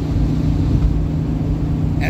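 Cabin noise of a vehicle driving steadily along a paved road, heard from inside: a steady low drone of engine and road.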